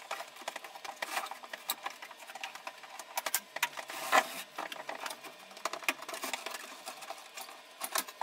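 Handling noise as an opened portable CRT TV is lifted and turned on its side on a wooden bench: irregular clicks, knocks and rattles from the plastic cabinet, chassis and wiring, with a louder knock about four seconds in.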